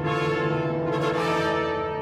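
Orchestral music with the brass section holding sustained chords.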